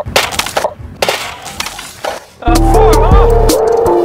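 A quick run of clattering knocks and a brief noisy rush as a drink cup is smacked out of a hand and crutches fall onto the pavement. About two and a half seconds in, loud background music with a heavy bass beat starts.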